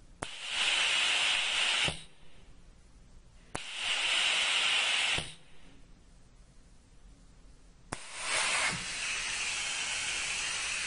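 Compressed-air vacuum ejector pump hissing in three bursts, each starting with a click as the air is switched on. The first two are short, about a second and a half each; the third starts near the end and keeps running a little quieter.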